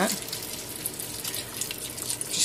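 Chicken broth pouring into a hot pan of sautéed diced potatoes and vegetables, a steady rush of splashing liquid. It deglazes the pan and lifts the potato starch stuck to the bottom.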